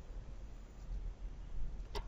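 A single computer mouse click near the end, over a steady low hum.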